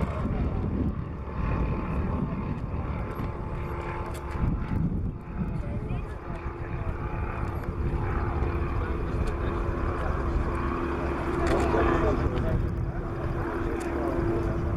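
Pipistrel Virus light aircraft flying by, its propeller engine droning with a steady tone that grows louder near the end, over a low outdoor rumble.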